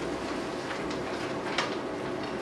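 Beef mince and frozen mixed vegetables sizzling steadily in a frying pan as they are stirred with a spatula. The spatula scrapes against the pan a couple of times.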